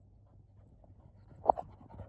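Sheepdog panting close by after working sheep, a few quick breaths, the loudest about one and a half seconds in.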